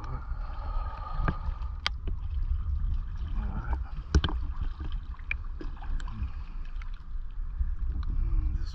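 Small boat drifting at the waterline under a dock: a steady low rumble of water and wind on the microphone, broken by a few sharp knocks, the loudest about four seconds in.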